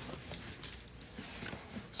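Quiet room with faint, scattered handling sounds: a few light clicks and rustles as things are moved about.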